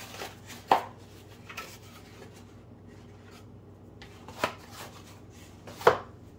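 Kitchenware and an egg carton being handled on a glass cutting board over a stone counter. There are a handful of sharp knocks and clinks: the loudest come just under a second in and near the end, with another about four and a half seconds in.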